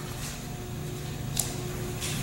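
Quiet room tone: a steady low hum with a faint steady tone over it, and one light click about one and a half seconds in.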